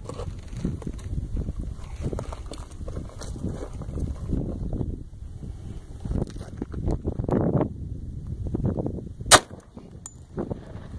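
Low wind rumble on the microphone, then near the end a single sharp pistol shot: a 5-inch 1911A1 firing a 114 gr .45 ACP ARX Inceptor round.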